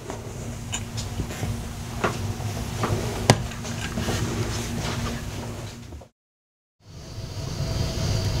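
Low room rumble with a steady hum and a scatter of sharp clicks and knocks, the loudest a little over three seconds in. The sound cuts to silence for under a second about six seconds in, then room noise returns.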